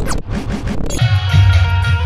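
A glitch transition sound effect: about a second of scratchy, sweeping noise. Then music cuts in with a steady bass line.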